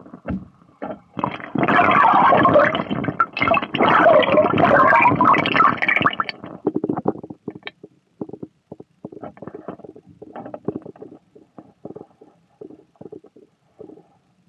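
Water sloshing and churning, heard muffled through a tiny action camera's own microphone as it is moved about under water. About six seconds in it turns into quieter scattered rubbing and small knocks of handling.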